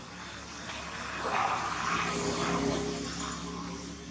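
A distant engine drone that swells and fades, loudest about halfway through, over a steady low hum.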